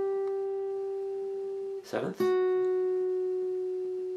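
Single guitar notes picked slowly and left to ring: the B string at the 8th fret (G) rings and fades. About two seconds in, the same string at the 7th fret (F#), a half step lower, is picked and rings on, slowly fading.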